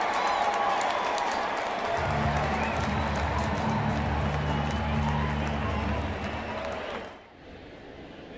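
Ballpark crowd cheering and applauding after a catch, with steady low music chords joining in about two seconds in and stopping shortly before the crowd noise cuts off, near the end.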